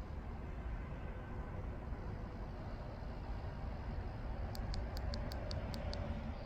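Faint, steady outdoor background noise, mostly a low rumble, with a quick run of about eight high-pitched ticks, around six a second, near the end.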